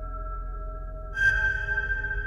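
Modular synthesizer music: sustained, ringing pitched tones, with a new, brighter note striking sharply about a second in and ringing on.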